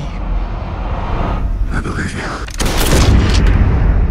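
A loud cinematic boom hit about two and a half seconds in, ringing out into a low rumble.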